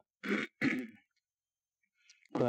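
A man clearing his throat twice in quick succession, close to a microphone.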